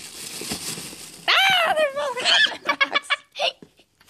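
A child's excited wordless exclamation, high and long, sliding down in pitch, followed by a short run of giggling. Before it there is a second of soft rustling from the toys being handled.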